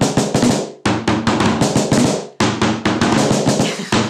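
Very fast drumming with sticks on a snare drum, played as a call-and-response pattern, in three quick runs of dense strokes with short breaks about a second in and past two seconds.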